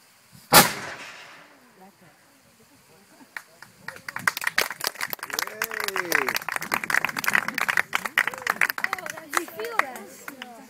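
A 300-year-old muzzle-loading cannon firing once, about half a second in: a single sharp blast whose echo fades over about a second.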